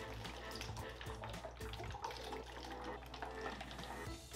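Water swirling down through the connector of a two-bottle tornado tube, with air bubbling up through the centre of the vortex: a steady run of small splashes and bubbles.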